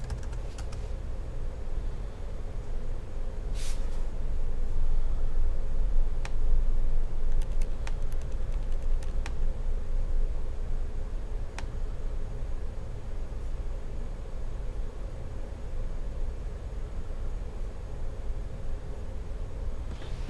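A few scattered key and trackpad clicks on a MacBook Pro, over a steady low rumble with a faint hum.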